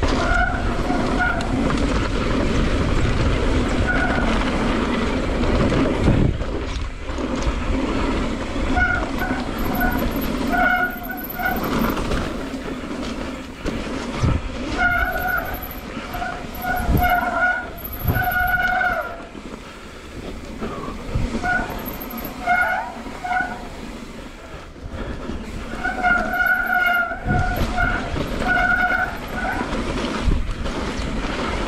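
Mountain bike rolling fast down a dirt trail, with steady tyre and wind rumble. Over it come repeated short squeals, each at the same pitch, typical of disc brakes squealing as they are applied; they come more often in the second half.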